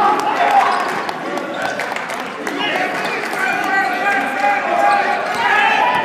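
Basketball game in a gym: spectators' voices shouting and talking, with the ball bouncing on the court in short knocks.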